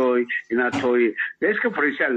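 Speech only: a man talking in Somali.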